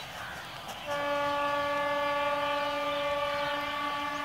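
Locomotive air horn sounding one long steady blast, starting about a second in and held to the end.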